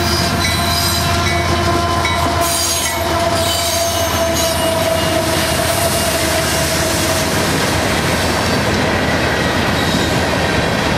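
Union Pacific diesel locomotives leading a loaded coal train past at close range, engines running over the steady rumble and clatter of the wheels on the rails, then coal hoppers rolling by. Steady high-pitched tones sound over the rumble and fade out about seven seconds in.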